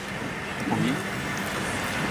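Steady outdoor background noise with a faint low hum, and a brief faint voice about three-quarters of a second in.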